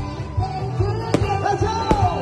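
Music with singing over a steady bass beat, broken by two sharp firework shots, about a second in and near the end.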